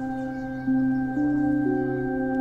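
Background music: slow ambient score of sustained, ringing notes over a steady high tone, the lower notes moving to new pitches a few times.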